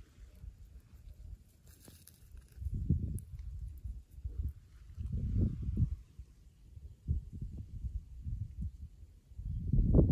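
Wind buffeting a handheld phone microphone: irregular low rumbles that come and go in gusts, strongest about three seconds in, around five to six seconds, and building again near the end.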